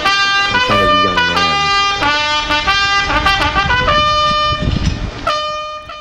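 Bugle sounding a call: a quick run of short notes hopping between a few pitches, then longer held notes near the end that stop abruptly.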